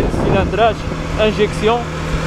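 A man talking over a Kawasaki Z250 motorcycle's engine running steadily on the move; the engine is an even low hum beneath the voice, which is the loudest thing heard.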